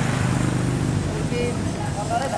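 Steady low engine rumble of motor vehicles on the road, with people's voices faint in the background.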